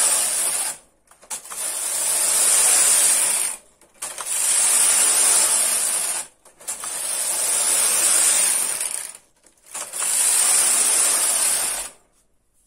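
Carriage of a domestic punch-card knitting machine pushed back and forth across the metal needle bed, knitting row after row of a patterned lace-and-tuck fabric. It gives a rattling clatter of needles and cams on each pass, each pass about two and a half seconds long, with brief pauses at the ends of the rows.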